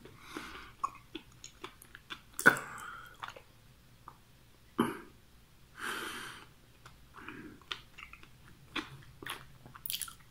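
A person chewing a mouthful of wasabi and sushi roll with the mouth closed, with small wet mouth clicks. A few sharp bursts of breath come through, the loudest about two and a half seconds in, and a longer breathy exhale near six seconds: reactions to the wasabi's burn.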